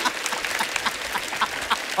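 Studio audience applauding and laughing: a steady patter of many hands clapping with short bursts of laughter through it.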